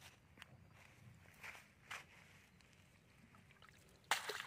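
Faint splashing of shallow water as a cast net holding a caught rohu is drawn through it, with a few short splashes about one and a half and two seconds in.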